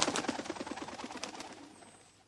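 A flock of pigeons taking off, their wings clattering in a rapid, irregular flutter that fades away near the end.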